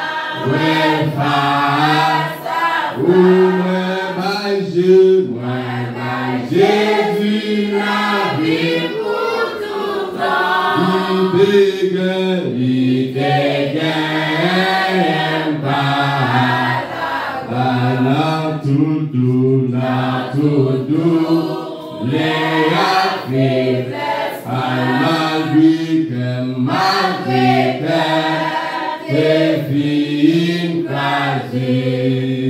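A congregation singing a hymn together, several voices holding long notes of a slow melody, with no instrument heard.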